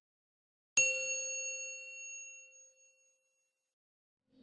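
A single bell ding sound effect, like a notification chime, struck about three-quarters of a second in and ringing out over about two seconds.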